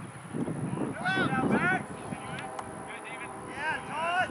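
Ultimate frisbee players shouting to each other during play: short, high-pitched yells about a second in and again near the end.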